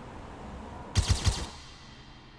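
Sound effect from a music-video trailer's soundtrack: a faint hiss, then a quick burst of about four heavy, deep hits about a second in, like a short volley of gunfire.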